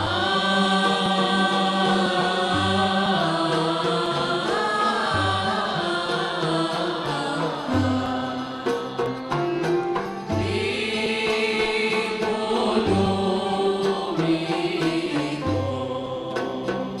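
Gharnati (Andalusian) music played live by an ensemble: voices singing together in long, gliding melodic lines over instrumental accompaniment that includes a piano, with low notes recurring every second or two.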